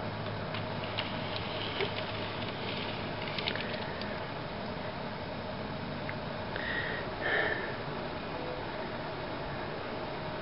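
Quiet room tone: a steady low hum with a few faint light clicks in the first few seconds and a brief soft sound about seven seconds in.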